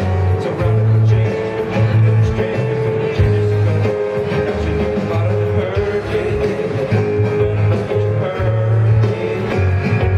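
Live band playing an instrumental stretch of an acoustic rock song: guitars and keyboard over a bass line of short repeated notes and a steady beat.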